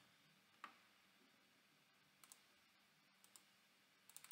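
Near silence: room tone with a few faint computer mouse clicks, the first about half a second in.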